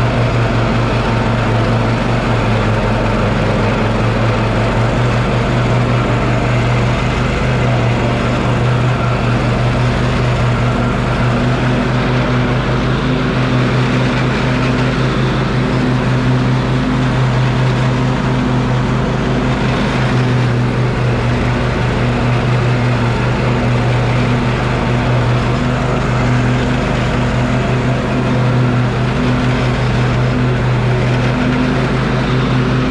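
Husqvarna YTA24V48 riding lawn tractor's V-twin engine running at a steady speed with the mower blades engaged, cutting grass.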